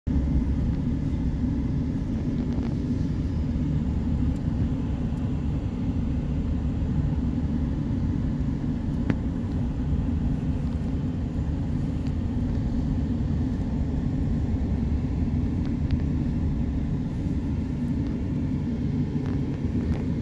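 Car driving along a road: a steady low rumble of road and engine noise, heard from inside the cabin.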